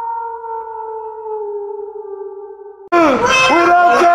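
A drawn-out wolf-howl sound effect holding one tone, slowly falling in pitch and fading. About three seconds in, a loud, wavering, drawn-out voice cuts in suddenly.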